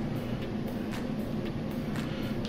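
A steady low hum of room or recording background noise, with two faint clicks about a second apart as the plastic streaming player is handled.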